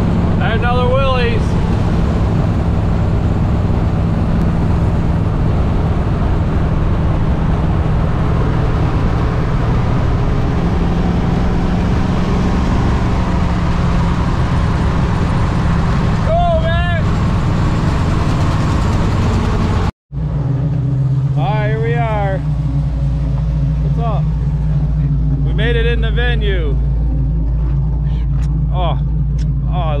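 Engine and road noise inside an old pickup truck's cab while driving with the windows open, wind rushing in, the engine's low hum steady under it. About twenty seconds in it cuts off suddenly to a steadier low hum with short bits of voices.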